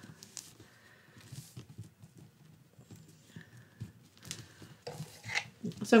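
Faint handling of paper: soft rustles and a few light taps as cardstock layers are pressed and slid flat against a tabletop.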